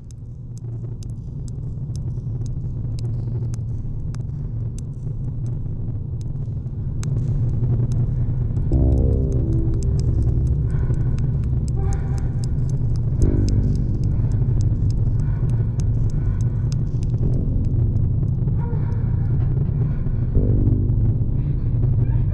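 Film score: a deep low drone that swells up over the first few seconds, sprinkled with faint crackling clicks. From about nine seconds in, sustained chords come in and fade out in blocks over the drone.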